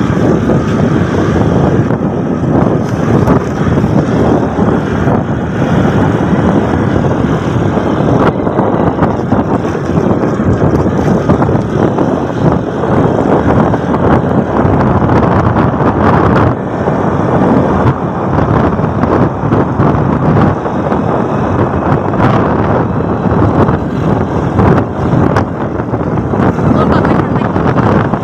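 Motorbike riding along, with steady engine and road noise and wind buffeting the microphone.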